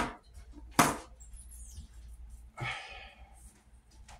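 A single sharp knock of a hand on the tabletop among the playing cards, a little under a second in, followed by a softer brief brushing sound later on.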